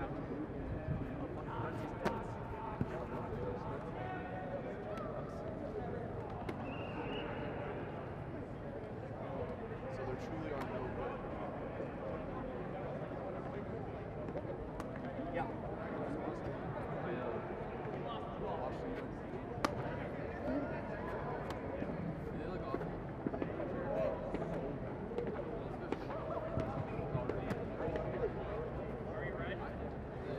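Indistinct voices of players talking and calling out across an open football field, with a few sharp knocks.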